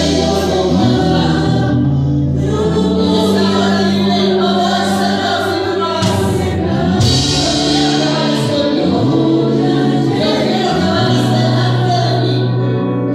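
Live Christian worship band playing: electric bass guitar holding long low notes, a drum kit with cymbals, and singing voices.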